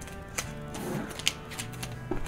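Soft background music with a few sharp clicks, from a record album in a clear plastic sleeve being handled.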